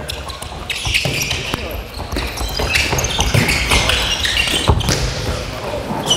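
A handball bouncing on a wooden sports-hall floor amid players' shoes squeaking and scuffing as they run, with indistinct player calls, all echoing in the large hall; a few sharp knocks stand out in the second half.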